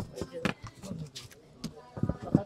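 A few knocks and rustles of leather backpacks being handled and set down on a cardboard box, with faint voices in the background.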